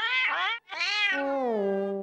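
A cartoon cat character's wordless cry: a short rising call, a brief break, then a longer call that rises, falls and ends on a low held note.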